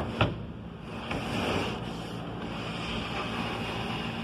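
A large sheet panel rolling forward over the steel rollers of a shop panel cart and saw infeed, a short knock just after the start and then a steady rolling hiss from about a second in.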